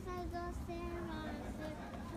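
A voice singing a short, simple tune, a string of brief held notes that drift slightly lower about a second in.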